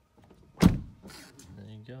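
A sharp thump, then a power window motor running briefly as the driver's door glass lowers, a steady low hum.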